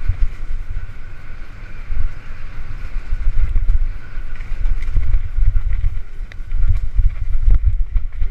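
Wind buffeting a helmet-mounted camera's microphone as a mountain bike rides a forest trail, a low rumble that swells and drops in gusts, with a few sharp knocks from the bike over the rough ground.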